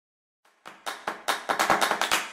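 Logo intro sound effect: a rapid run of sharp percussive hits, about five a second. It starts about half a second in and grows louder.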